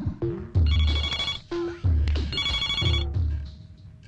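A telephone ringing in two bursts, each under a second long and about two seconds apart, over background music with a heavy bass beat.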